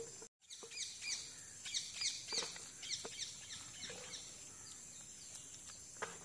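Small birds chirping: repeated short, falling chirps, thickest in the first half, over a steady high-pitched insect drone.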